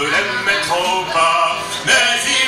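Live folk song: acoustic guitar played with singing, amplified through a PA.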